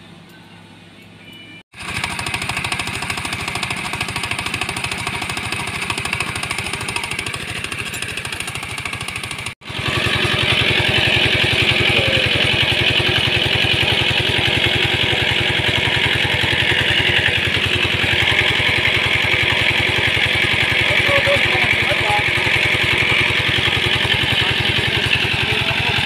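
Single-cylinder diesel engine running steadily with an even, rapid pulse as it drives a long-arm paddle wheel aerator through a belt and chain. The sound starts suddenly about two seconds in and gets louder about ten seconds in.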